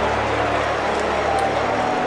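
A large arena crowd cheering and shouting, a steady dense roar, with sustained low musical tones underneath.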